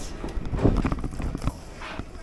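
A quick run of knocks and clatter through the first second and a half as dropped gear is picked up and handled close to the microphone.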